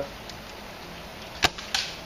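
A Novritsch SSG24 spring-powered bolt-action airsoft sniper rifle firing a single shot: one sharp crack about one and a half seconds in, followed by a fainter, hissier sound about a third of a second later.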